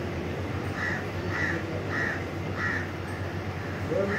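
A bird calling outdoors among trees: four short, evenly spaced calls, starting about a second in and coming a little more than half a second apart, over a steady low background hum.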